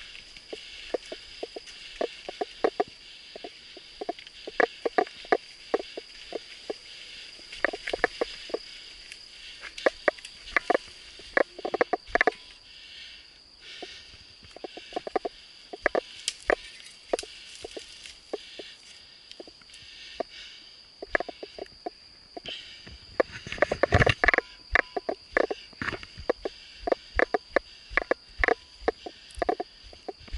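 Mountain bike rattling and clattering over a bumpy dirt forest trail: quick irregular knocks, with a heavier cluster and a thump about 24 seconds in. A steady high-pitched insect drone runs behind it.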